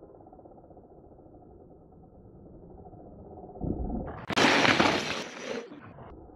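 Mountain bike landing a jump and rolling past on a dry dirt trail: a low thud about three and a half seconds in, then about a second of loud crunching of tyres through loose dirt and gravel that fades away.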